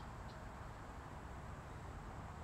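Quiet riverside outdoor background: a steady low rumble under a faint hiss, with a faint short high chirp about a third of a second in.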